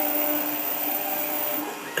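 New Hermes Vanguard 4000 engraving machine running steadily as its spindle spins a diamond drag bit to engrave anodized aluminum, giving a continuous motor hum.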